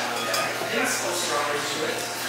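Indistinct voices talking in the background, quieter than close speech.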